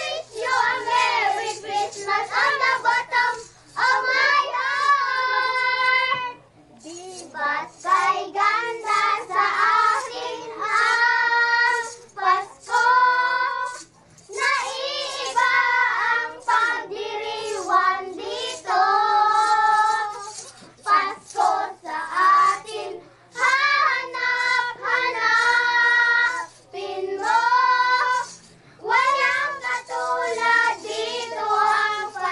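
A group of young children caroling, singing a Christmas carol together in sung phrases with short breaks between lines.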